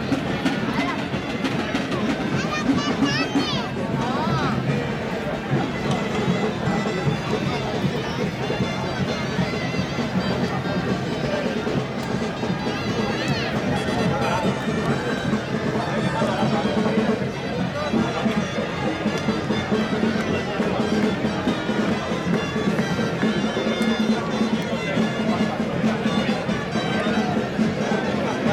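Live folk music played on loud reed pipes, carrying on steadily without a break, over the voices and chatter of a crowd.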